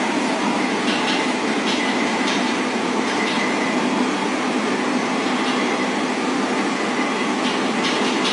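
Steady noise of a train running, even throughout, with faint clicks now and then.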